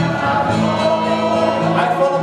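A man singing into a microphone to his own acoustic guitar, with other voices singing along.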